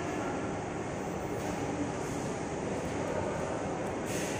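Steady, even rumbling background noise of a large railway station hall, with no distinct events.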